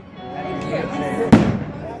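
One firework bang a little past halfway through, sharp and briefly echoing, over the chatter of a crowd and background music.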